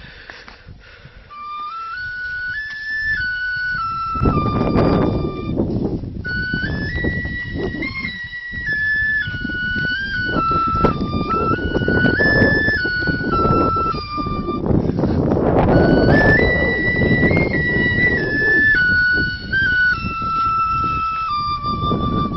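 A small flute playing a simple tune that steps up and down in three phrases with short breaks between them, ending on a long held note. A loud, gusting low noise runs underneath from a few seconds in.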